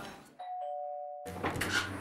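Electronic two-tone doorbell chime, a higher note with a lower one joining just after, held for about a second and then cut off abruptly. It gives way to room noise with a couple of light clicks.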